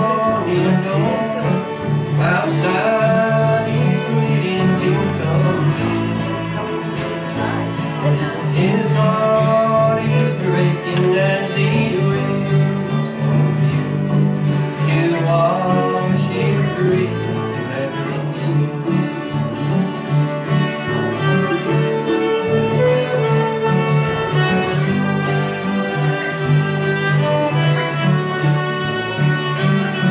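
Acoustic country-gospel band playing an instrumental break in the key of D: fiddle carrying the melody over strummed acoustic guitars.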